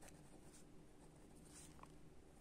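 Faint scratching of a pen writing on lined notebook paper, in short irregular strokes.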